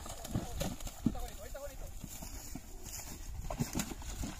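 Horse hooves on wet, muddy ground: a few irregular dull thuds as the horses step through the mud.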